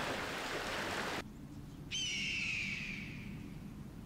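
Breath blown hard into a smouldering tinder bundle, a steady rushing hiss that cuts off about a second in. Then a single loud, descending bird cry fades out over about a second and a half.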